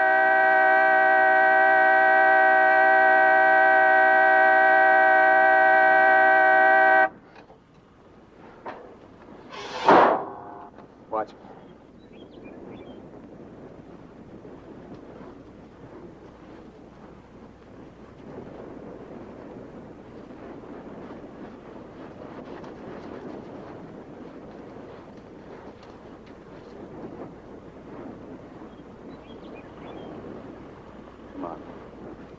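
A car horn held down in one steady blare for about seven seconds, cutting off suddenly. A short, sharp sound follows a few seconds later, then faint open-air background.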